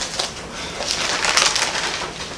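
Paper rustling as the pages of a Bible are turned: a short rustle at the start and a longer one in the second half.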